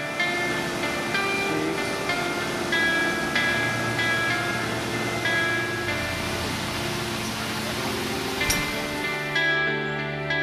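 Soft background music of spaced, plucked guitar-like notes over a steady rushing noise. The noise drops away near the end, just after a single sharp click.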